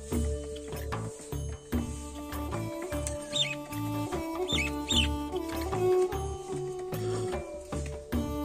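Background music with a repeating bass pattern and held tones. A few short high chirps sound about three to five seconds in.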